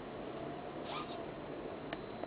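Hobby servo motors of a small robotic arm whirring briefly about a second in as the arm steps to a new position, followed by a single sharp click near the end, over a steady low background hum.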